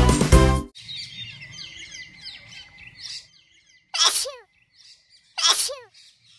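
A children's song with singing stops under a second in, leaving a cartoon birdsong background of quick high chirps. After that come two short loud sounds about a second and a half apart, each sliding steeply down in pitch.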